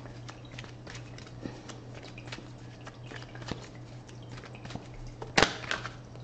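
Tarot cards being shuffled by hand: a run of small papery flicks and clicks, with one sharper snap about five seconds in as a card comes free of the deck.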